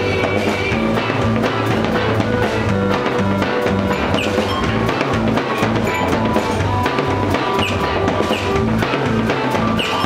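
Live band playing, with a drum kit keeping a steady beat over bass and other instruments.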